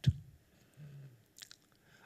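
Faint mouth noises picked up close on a lectern microphone as a man pauses between phrases: a sharp click at the start, a brief low hum of the voice near the middle, and a couple of small lip smacks about one and a half seconds in.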